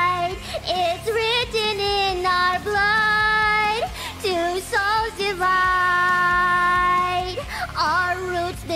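A woman singing long held notes, with wavering runs between them, over a music backing track.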